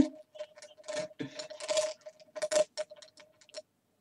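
A man laughing breathily under his breath: a run of short, irregular puffs of air that stop shortly before the end.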